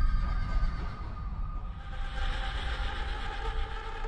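A horse whinnying, with a deep steady rumble underneath.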